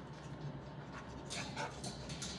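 Dog panting close to the microphone at the kennel bars, with a short louder burst of breath about one and a half seconds in. A steady low hum runs underneath.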